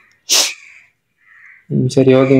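A short, sharp breathy burst from a person, about a third of a second in, followed by a voice starting near the end.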